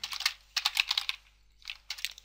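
Computer keyboard typing: a quick run of keystrokes, a short pause, then a few more keystrokes near the end.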